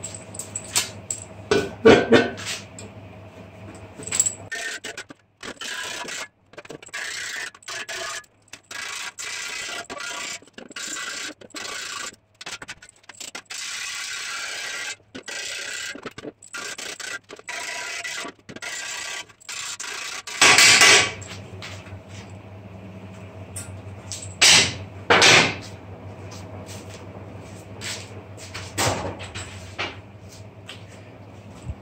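A handheld electric grinder working steel, with short loud grinding bursts over a steady low hum. Through the middle stretch the sound keeps cutting abruptly to silence.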